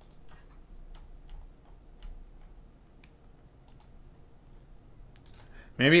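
Quiet room tone with a few faint, scattered clicks; a man's voice starts near the end.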